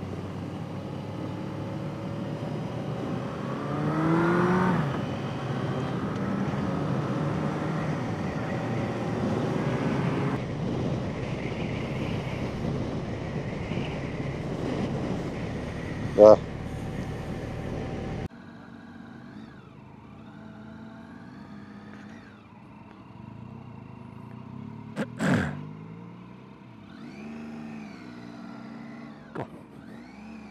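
Motorcycle engine and wind noise while riding, the engine note rising and falling with throttle and gear changes. About two-thirds through the sound cuts abruptly to a quieter recording of another bike, its engine pitch climbing and dropping, with a single sharp knock a few seconds later.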